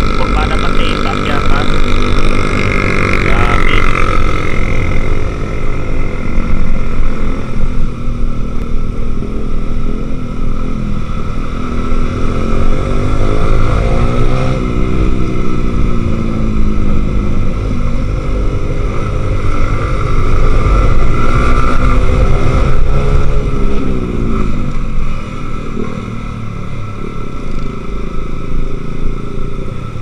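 Motorcycle engine running on the move, its pitch rising and falling slowly several times as the throttle opens and closes through the bends, with heavy wind rumble on the microphone.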